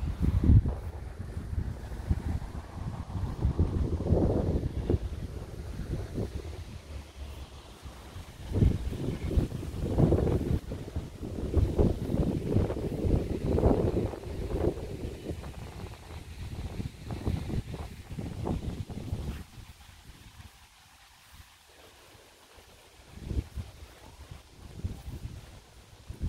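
Gusts of wind buffeting the microphone, a rumbling that swells and fades, dropping away about twenty seconds in and returning briefly near the end.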